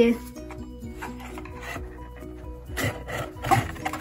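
Fingers scraping and rubbing on a cardboard photo frame while trying to lift it out of its snug box insert, with a few louder scrapes about three seconds in. Soft background music plays underneath.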